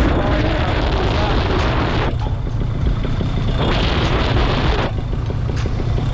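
Paramotor engine and propeller running in flight, a steady low drone, with wind rushing over the microphone that swells and fades twice.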